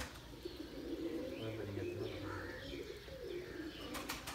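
Domestic pigeons cooing, a low, drawn-out murmur, with faint high chirps from other birds scattered through it.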